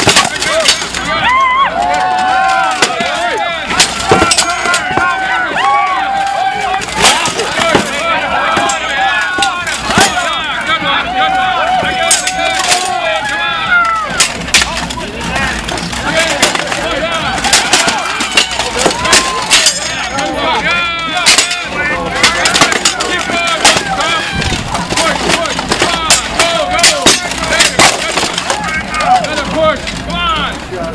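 Steel swords striking plate armour and shields again and again in a full-contact armoured sword-and-shield fight: many sharp, irregular strikes, some ringing briefly, over the voices of a crowd.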